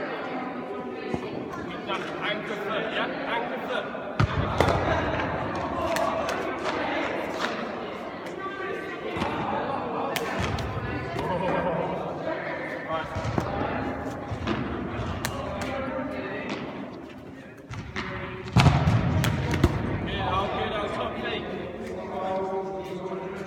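Voices echoing in a large sports hall, broken by sudden thuds of a cricket ball bouncing on the hard floor and being caught. The loudest thuds come about four seconds in and near the end.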